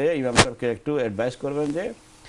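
A man speaking, with one sharp thump less than half a second in that is louder than his voice.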